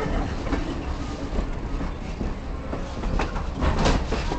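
Railroad train rolling on the track, its wheels clicking and clacking over rail joints above a steady low rumble, with a cluster of louder clacks near the end.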